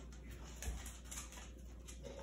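Faint, quiet handling of stickers: a few soft clicks and one low thump as star stickers are peeled from a sheet and pressed onto a plastic cup, over a steady low room hum.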